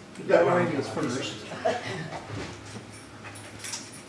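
A person's voice, short and unintelligible, in the first second or so, followed by faint clicks and rustling.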